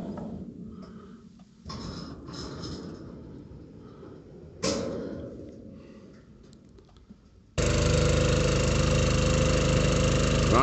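A few faint knocks and a clank, then a water tanker truck's engine starts running steadily and loudly about three-quarters of the way in, driving the pump that transfers water from the tanker into a storage tank.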